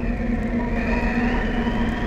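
Synthesized cartoon magic sound effect as a spell of light is cast: a steady humming drone with a high tone that slowly rises after about the first second.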